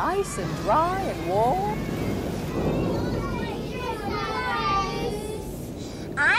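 Young children's voices, high excited exclamations and chatter without clear words, with a noisier stretch in the middle.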